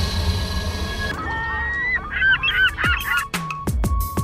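A steady rushing sound gives way after about a second to a flurry of bird calls, short honking squawks that rise and fall in pitch. Near the end, electronic music comes in with sharp beats and deep falling bass hits.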